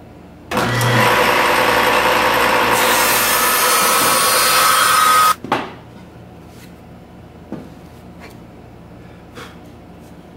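Table saw starting and ripping through a mahogany guitar neck blank held in an angled jig, cutting a 15-degree scarf joint; it starts suddenly about half a second in and cuts off abruptly about five seconds in. A few light knocks follow as the cut wood is handled.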